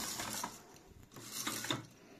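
Uni-2 zebra roller blind's bead-chain clutch mechanism turning as the chain is pulled, rolling the fabric to shift its stripes. It runs in two short spells, the first ending about half a second in and the second starting about a second in.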